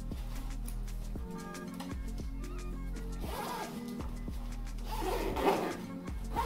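Zipper on a pet stroller's mesh cover being pulled closed, in two rasping pulls about three and five seconds in, over background music.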